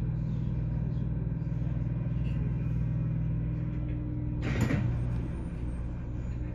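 Steady low hum of a JR Kyushu 813 series electric train standing at the platform with its doors closed, about to depart. About four and a half seconds in there is a short burst of hiss.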